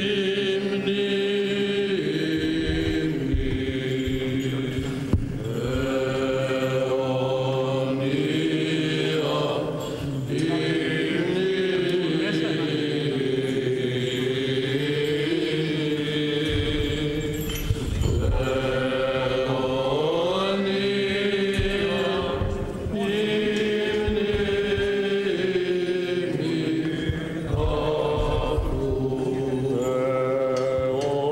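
Greek Orthodox Byzantine chant sung by men's voices: a slow, melismatic melody over a steady held drone (the ison), in long phrases with brief breaks for breath.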